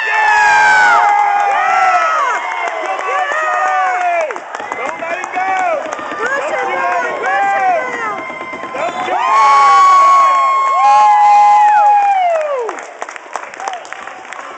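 Spectators yelling and cheering on a wrestler pinning his opponent, many voices shouting at once. Long held yells are loudest about two-thirds of the way in, then the noise dies down near the end.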